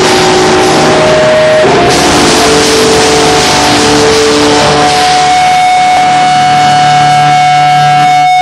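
Live hardcore rock band playing loudly: distorted electric guitars, bass and drums with cymbal wash. From about five seconds in, held notes and a steady high ringing tone sustain.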